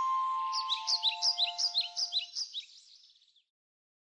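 Closing sound of a logo sting: high ringing tones fading out under a quick run of bird-like chirps, about five a second, which stop shortly before three seconds.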